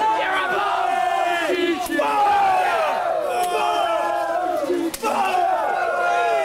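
Wrestling crowd shouting and yelling over one another, many voices at once. Two brief sharp cracks cut through, about two and five seconds in.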